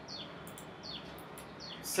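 A bird chirping faintly in the background: a series of short notes, each falling in pitch, about two a second, over a low steady hum.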